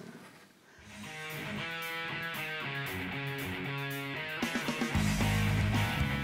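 Instrumental background music with guitar, starting after a brief near-silence about a second in.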